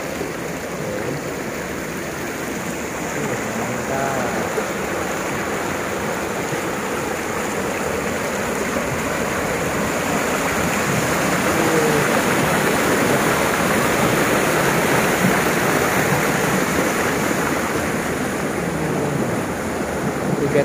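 Shallow rocky river rushing and babbling over stones and through a narrow rock channel, a steady flow that grows louder toward the middle.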